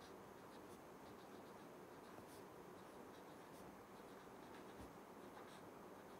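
Faint strokes of a marker pen on paper as a word is written letter by letter, with short scratches coming in quick irregular bursts over a low room hiss.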